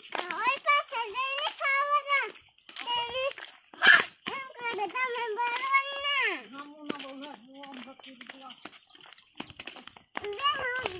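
A young child's high voice, babbling and calling in drawn-out sounds, with one loud, sharp cry about four seconds in. Near the end a lower, steady call is held for about two seconds.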